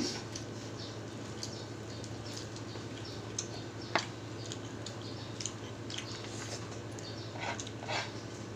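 Mouth sounds of two people eating with their hands: soft chewing and small wet clicks and smacks, with a sharper click about four seconds in, over a steady low hum.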